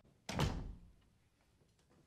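A door pulled shut, landing in its frame with a single thud about a third of a second in, preceded by a faint click.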